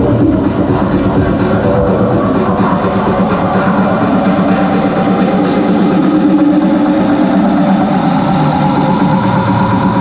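Electronic dance music from a DJ set, played loud over a club sound system. A sustained, distorted, guitar-like layer holds throughout, with a tone that rises slowly in the second half and no strong beat.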